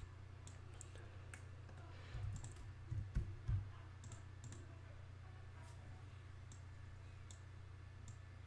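Computer mouse clicks and a few keyboard keystrokes, scattered sharp single clicks over a steady low electrical hum, with a few soft low thumps about two to three and a half seconds in.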